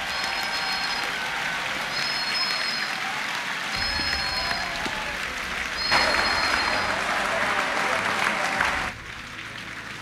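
A large congregation clapping. The applause swells about six seconds in and dies down near the end.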